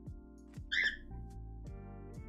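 Background music of plucked guitar with sustained notes, at a steady beat. About three quarters of a second in, a short high-pitched squeak cuts in, louder than the music.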